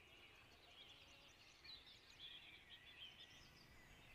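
Near silence: faint outdoor ambience with small birds chirping now and then.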